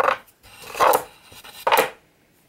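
Three short scraping and rubbing sounds about a second apart, from a wooden drawer and its contents being handled.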